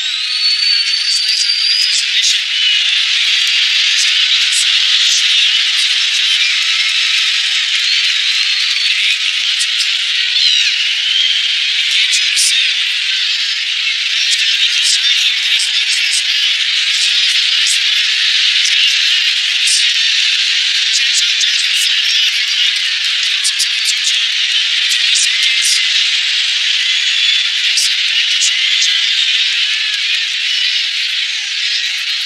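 Large arena crowd cheering, with a few shrill whistles and scattered claps over a dense roar, sounding thin with no bass.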